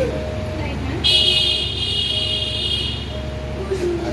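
A loud, high-pitched tone held for about two seconds, starting about a second in, over a shorter, lower beep that repeats about once a second.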